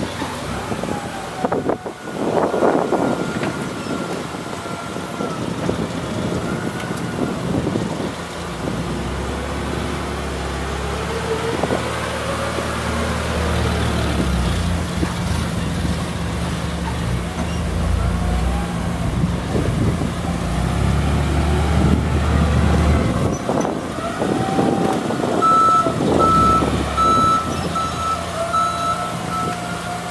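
Propane-powered Yale Veracitor 60VX forklift engine running as the truck drives and manoeuvres, its pitch rising and falling with the throttle. Near the end the reverse alarm beeps steadily as it backs up.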